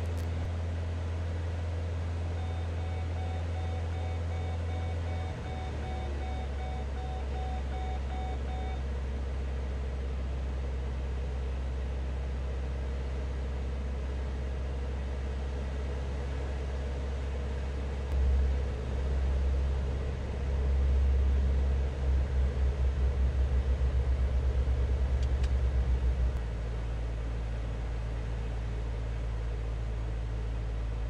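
Single-engine light aircraft's piston engine and propeller droning steadily inside the cockpit, the note stepping down a little about five seconds in. From about 18 to 26 seconds the drone swells and pulses rapidly, then settles at a lower, steadier note. A faint intermittent beep sounds for several seconds near the start.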